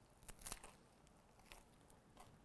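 Faint chewing of a mouthful of egg salad with crisp lettuce: a few soft crunches in the first half second and another about a second and a half in.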